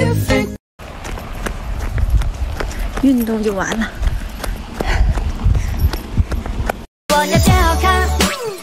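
Pop music cuts off in the first second. After a short gap comes rumbling, rustling noise with scattered knocks, like wind on a phone microphone, and midway a woman's voice glides downward. Music starts again near the end.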